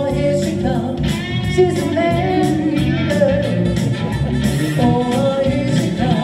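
A woman singing a pop song into a microphone, with an electric guitar accompanying her through amplifiers. The sung line has long held notes that slide between pitches over a steady rhythm.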